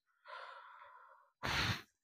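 A man's breathing picked up close on a clip-on lapel microphone: a soft breathy sigh, then about a second and a half in a short, louder puff of breath.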